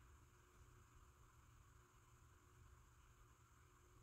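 Near silence: faint, steady room tone and hiss.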